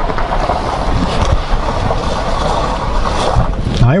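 A vehicle driving slowly on a gravel road, heard from inside the cab: a steady rumble of engine and tyre noise.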